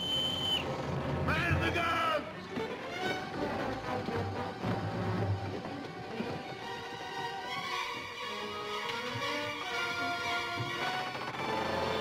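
A bosun's pipe gives one short, high, steady whistle at the start, followed by a brief burst of men's shouts. Film score music then plays for the rest.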